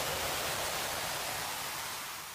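A steady rush of hiss-like noise, a whoosh sound effect for an animated logo intro, that begins to fade near the end.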